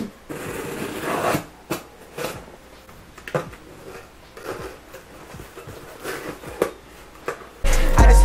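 A cardboard shipping box being opened: scissors cutting the packing tape, cardboard flaps scraping and kraft packing paper crinkling, in irregular scrapes and rustles. Loud music with a heavy beat starts just before the end.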